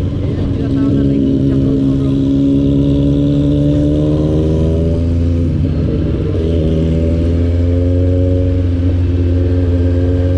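Rusi Sigma 250 motorcycle engine pulling under acceleration, its pitch rising slowly for about five seconds. It drops briefly at a gear change around six seconds in, then rises again.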